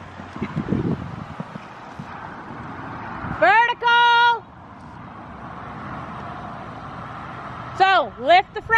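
A riding instructor's single long call, one drawn-out word held for about a second midway through, over a steady outdoor background hiss.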